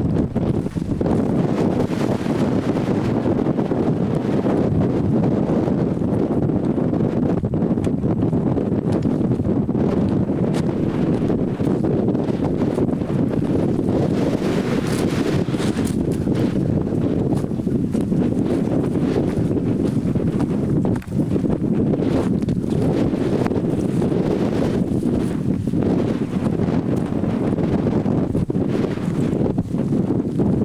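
Wind buffeting the camcorder's microphone: a loud, steady low rumble.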